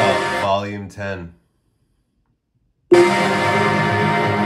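Electronic music played through the Echo Show 8's built-in speaker. The music trails off into a gliding, voice-like passage, then cuts to total silence about a second and a half in, and starts again abruptly at full volume near the three-second mark.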